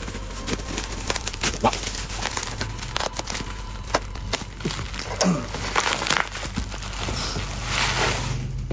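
Bubble wrap and plastic packaging crinkling and rustling, with many short sharp clicks and crackles, as packing tape is cut with a box cutter and the wrap is pulled off a toy box.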